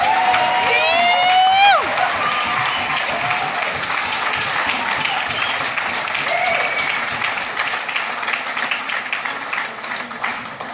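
Audience applauding, with one listener's long rising whoop about a second in and a few short calls later. The clapping thins near the end.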